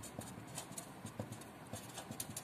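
A felt-tip marker writing on paper: a faint run of short, irregular taps and scratches as the tip makes each stroke.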